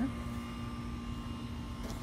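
Steady low rumble of background machinery with a faint, even hum, unchanging and with no handling noises.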